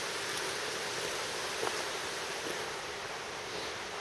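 Steady rushing of a small mountain stream flowing over rocks.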